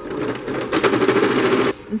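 Electric domestic sewing machine stitching rapidly, sewing a zip in with a zipper foot. It picks up speed and loudness over the first half second, then stops abruptly near the end.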